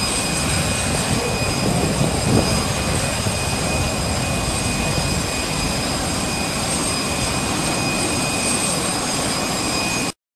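Steady jet turbine noise on an airport apron: a constant rush with a thin high whine held at several fixed pitches.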